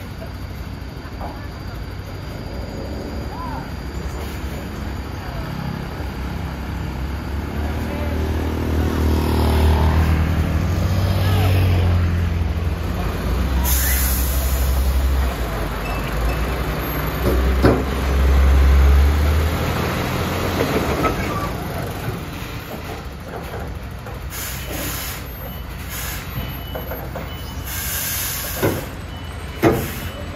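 Heavy MAN TGS truck's diesel engine working hard under load as it hauls a low-bed trailer carrying a crawler crane, the low rumble swelling loudest about a third of the way in and again just past the middle. Short bursts of air-brake hiss come around the middle and several times near the end.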